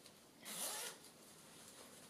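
A brief rasping swish of paper or card being handled, about half a second long.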